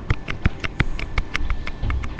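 Handling noise: rapid, irregular sharp taps and clicks, several a second.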